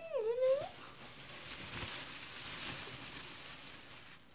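A drawn-out, wavering vocal "and then" trails off under a second in, then a plastic shopping bag rustles and crinkles as it is rummaged through and lifted.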